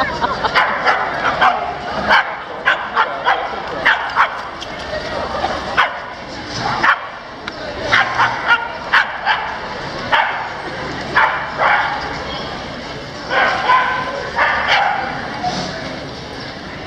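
Several dogs barking and yipping in quick, short barks, over people talking, with a brief lull about six seconds in.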